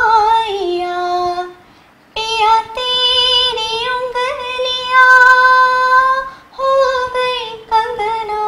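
A woman singing an unaccompanied song in a clear voice, holding long notes with vibrato. She breaks off briefly about two seconds in and again around six and a half seconds.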